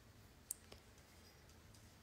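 Near silence: room tone, with one small sharp click about half a second in and a fainter click just after.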